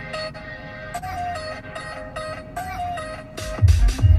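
Electronic music playing through a car's factory audio system with an added Rockford subwoofer, heard inside the cabin. A repeating melody runs, and near the end heavy bass beats come in loudly.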